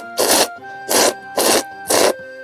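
A person slurping instant ramen noodles from a cup, four short, loud sucking slurps about two a second.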